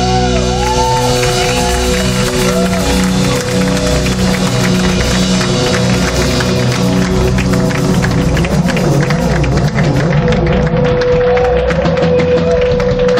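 Live instrumental rock trio: a fuzz-driven Telecaster through delay pedals and a Vox amp makes swooping, looping pitch glides and then a held high tone that grows stronger near the end, over sustained electric bass notes and drums with cymbals.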